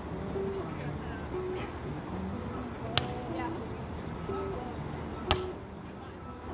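Two sharp slaps of hands and forearms striking a beach volleyball during a rally, about three seconds in and again two seconds later, the second the louder.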